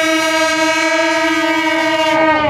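A troupe of shaojiao, long brass Taiwanese processional horns, sounding one long steady note together.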